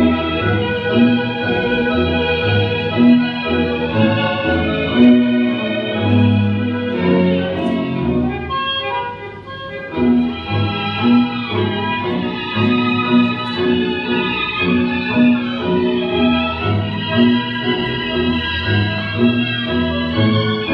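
Recorded tango orchestra music: sustained bandoneon chords over a steady bass beat. It thins out briefly a little before halfway, then comes back in.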